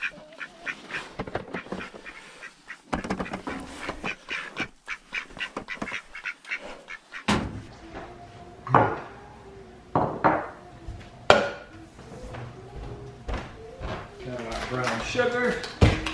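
Poultry calling: a fast run of short, repeated calls. About seven seconds in the sound changes to a kitchen, with a few sharp knocks as glass bottles are set down on a stone countertop.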